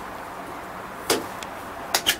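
Steady low background hiss, with a short whoosh about a second in and a sharp click near the end.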